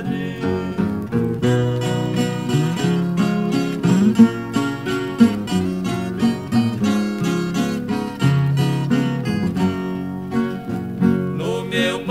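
Instrumental break in a 1963 música caipira toada: acoustic guitars picking a melody over plucked bass notes, with no singing.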